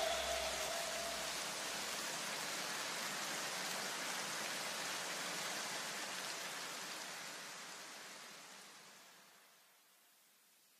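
A steady hiss of noise, the wash left at the tail of the electronic background music after its beat cuts out. It fades slowly away to silence about nine seconds in.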